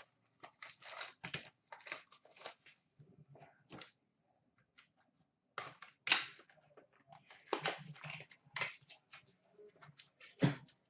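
Trading-card box packaging handled and opened by hand: scattered short crinkles, rustles and taps of wrapper and cardboard, with a quiet pause in the middle.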